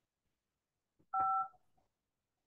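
A single telephone keypad tone: two steady pitches sound together for about half a second, a little after a second in, with a soft click just before.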